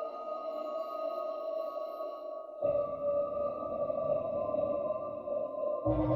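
Electroacoustic music played over loudspeakers, one of them an experimental rotating loudspeaker, in a reverberant hall: several held tones sound together. About two and a half seconds in, a low, noisy layer cuts in abruptly and the whole sound gets louder.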